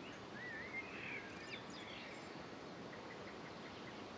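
Faint outdoor ambience with a small bird giving a short, warbling chirp of song during the first second and a half.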